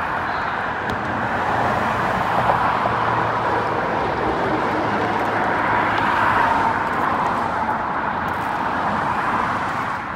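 Road traffic passing close by on a multi-lane road: a steady rush of car tyres and engines, with a faint low engine hum underneath through the middle.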